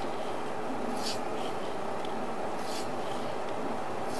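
Sewer inspection camera's push cable being fed through the cleanout into the line: a steady rushing noise with a few brief scraping rubs as the cable slides.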